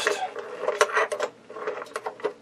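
A 5/16 nut driver working a bolt loose on the swivel arm of a Philco Predicta picture-tube head: a run of small metal clicks and scrapes, with a few sharper clicks about a second in.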